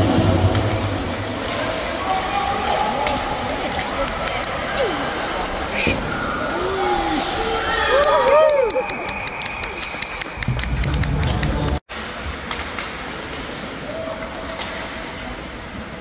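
Youth ice hockey game: voices shouting and calling out across the rink, with scattered clacks of sticks and puck. About eight seconds in comes a quick run of sharp clicks, and the sound cuts out for an instant just before twelve seconds.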